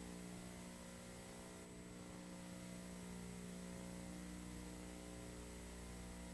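Faint steady electrical mains hum with a low hiss.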